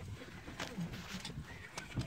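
Faint bird calls over low background noise, with a couple of short clicks.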